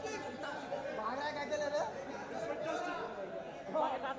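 Several voices talking over one another: a steady crowd chatter of overlapping speech, with no single clear speaker.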